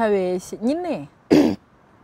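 A woman talking, then a single short cough about a second and a half in, the loudest sound here.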